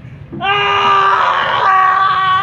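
A performer's long, loud scream, starting about half a second in and held on one high pitch, wavering toward the end.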